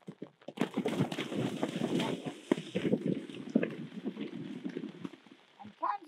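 A horse cantering through a shallow water jump, its hooves splashing and striking in quick succession. The splashing starts about half a second in, is loudest over the next two seconds or so, and thins out towards the end.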